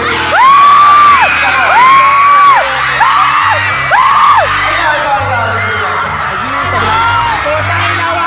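Live a cappella singing through a PA: four high held vocal cries in the first half, each sliding up and then dropping off at the end, over a low pulsing bass line, with cheering from the crowd.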